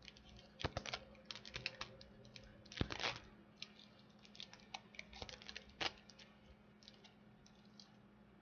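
Packaging of a new lip crayon being opened and handled: irregular small clicks and crackles, with a denser burst about three seconds in.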